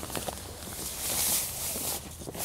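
Rustling and scraping of nylon fabric as an inflated TPU-coated nylon sleeping pad is pushed into a tent and slid over the tent floor, with a few faint knocks at first and a swell of rustling about a second in.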